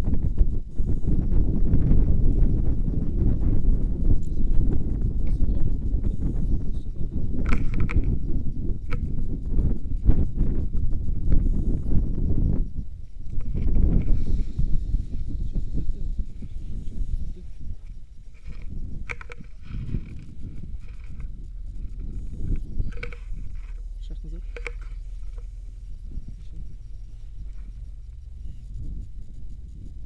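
Wind buffeting an outdoor action camera's microphone: a heavy low rumble for the first dozen seconds that then eases off, with brief faint sounds scattered through the quieter second half.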